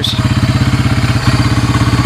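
Honda TRX300 4wd ATV's single-cylinder four-stroke engine idling steadily, with fast, even pulses.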